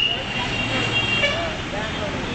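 Road traffic running, with a high horn-like tone that fades out over the first second and a half, and voices in the background.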